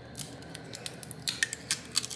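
Metal tweezers clicking against a tablet display panel's metal back and flex cable while working tape loose: an irregular run of short, sharp clicks, about eight in two seconds.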